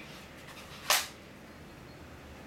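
A single sharp knock about a second in, over quiet room tone.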